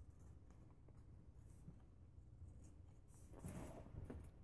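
Faint scratching and clicking of a new tin of Grizzly Mint long cut dip being worked open by hand to crack its seal, with a brief louder sound about three and a half seconds in.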